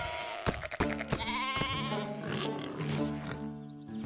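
Cartoon sheep bleating with a wavering, quavering voice in the first half, over the soundtrack music, which goes on with steady held notes after the bleats. A few sharp knocks come in the first second.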